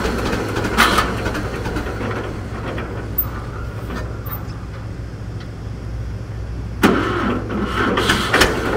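Old John Deere tractor engine idling steadily, with two sharp knocks, one about a second in and one near the end.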